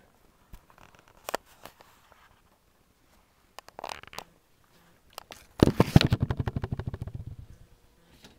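Workbench handling noises as covering fabric is pulled taut and clamped over an aircraft elevator: scattered light clicks and a short scrape, then a loud, rapid rattle of many small clicks lasting about two seconds and fading out.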